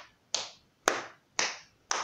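A steady beat made with the hands: four sharp snaps or claps, about two a second, keeping time for the chant.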